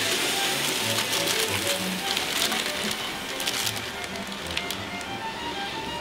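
Marinated bulgogi beef sizzling and crackling as it goes into a hot skillet in its own sesame-oil marinade, the sizzle easing off after about four seconds. Soft background music plays underneath.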